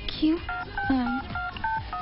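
Electronic cash register keypad beeping as keys are pressed to ring up a sale: a quick run of short beeps of varying pitch, about four a second.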